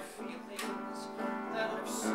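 Live musical theatre song: piano accompaniment under a man's singing voice.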